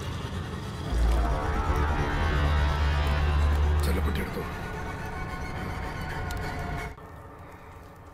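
Horror film soundtrack: a deep low rumble swells about a second in under dark music, with a short line of spoken film dialogue, then the sound drops away near the end.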